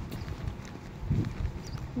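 Footsteps of a person walking, an irregular run of low thuds with a stronger one about a second in, along with phone handling noise.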